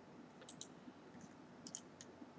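Faint computer mouse clicks: two quick pairs about a second apart.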